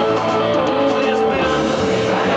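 Live rock band playing, with electric guitar to the fore over bass and drums.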